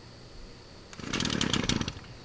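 Shindaiwa T242 23.9cc two-stroke string trimmer engine pull-started on full choke, firing in a short ragged burst of pops for about a second, starting about a second in, then dying. That first fire is the sign to move the choke to half.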